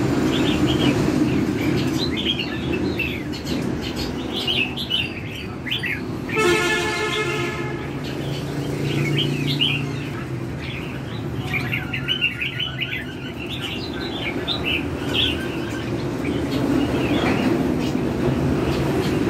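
Caged red-whiskered bulbuls chirping and calling in quick short phrases, over a steady low rumble. A horn sounds for about a second and a half, about six seconds in.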